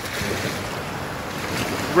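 Steady wash of ocean surf breaking over a shallow shoal, with wind rushing over the microphone.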